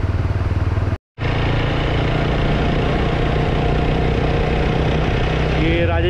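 Motorcycle engine running steadily while riding at cruising speed, with wind noise on the microphone. About one second in, the sound cuts out to silence for a moment, then resumes steadier.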